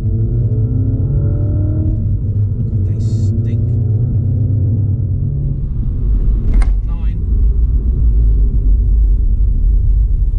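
Cabin sound of a MINI Cooper S F56 on the move: a steady low road and engine rumble. The turbocharged four-cylinder's note climbs and shifts in pitch through the first five seconds as the car accelerates. There is a short sharp click about six and a half seconds in.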